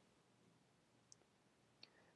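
Near silence: room tone, with two faint short ticks, about a second in and near the end, from a stylus on a tablet screen.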